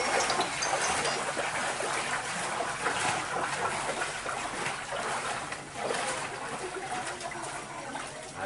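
Footsteps wading through shallow floodwater: an uneven run of splashes and sloshes.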